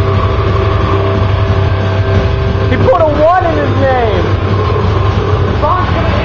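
A steady low rumble, with a person's voice calling out briefly about three seconds in.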